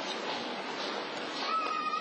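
Outdoor street ambience, a steady even hiss of background noise, with a brief, steady high-pitched tone near the end.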